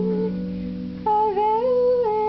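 A woman singing a folk song to her own harp accompaniment. One sung phrase ends just after the start, a low harp note rings on through a short gap, and a new phrase begins about a second in.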